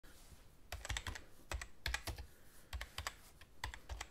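Typing on a MacBook Pro laptop keyboard: quick runs of key clicks in about five short bursts with brief pauses between.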